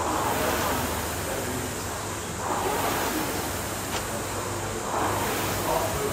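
Indoor rowing machine's fan flywheel whooshing with each stroke of a steady row, surging about every two and a half seconds.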